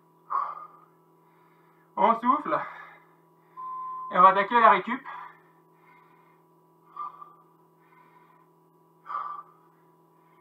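A man catching his breath after a hard interval workout: short gasping breaths spaced a few seconds apart, with two brief voiced sounds in the middle.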